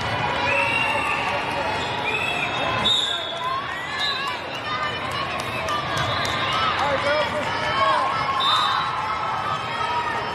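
Busy, echoing hubbub of a large indoor volleyball hall: many voices of players and spectators calling out over one another, with repeated sharp thuds of volleyballs bouncing and being struck.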